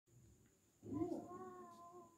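A faint, drawn-out, voice-like call starts a little under a second in. It holds one nearly steady pitch and slowly fades away.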